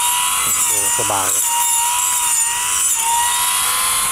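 OSUKA OCGT407 cordless grass trimmer's brushless motor running a small circular saw blade through tough grass stems. It makes a steady high whine over a hiss, and the pitch wavers slightly as the blade bites into the clump.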